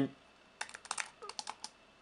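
Typing on an Apple Wireless Keyboard's low-profile aluminium-framed keys: a quick run of about a dozen light key clicks. It starts about half a second in and stops shortly before the end.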